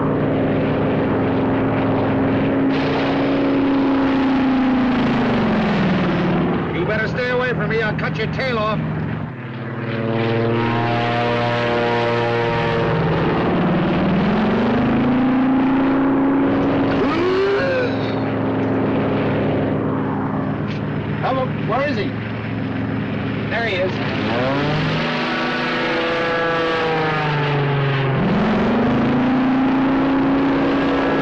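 Propeller airplane engines droning during stunt flying, the pitch swooping down about five seconds in, climbing again around fourteen seconds, dropping near twenty-four seconds and rising once more near the end as the planes dive and pull up.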